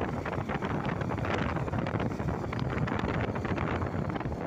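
Wind buffeting the microphone of a moving motorcycle, a steady rushing noise over the bike's engine and tyre noise.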